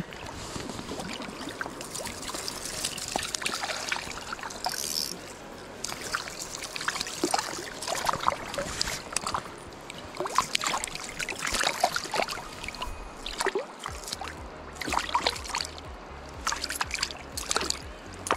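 Shallow river water trickling and lapping, with irregular light ticks and splashes.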